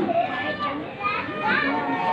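A crowd of spectators chattering: many overlapping voices talking at once, with no single voice standing out.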